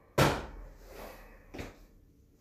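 A bonesetter's fist striking a patient's bare back as a manual blow to set the vertebrae: one loud smack just after the start, then a lighter one near the end.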